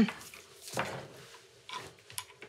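Desk telephone handset being lifted off its cradle: a soft clunk and rustle a little under a second in, then a few light clicks near the end.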